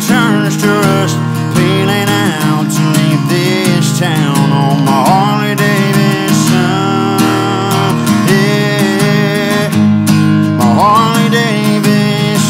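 Country song instrumental break: acoustic guitar strummed steadily, with a melodic lead line over it that slides and bends in pitch several times, and no lyrics sung.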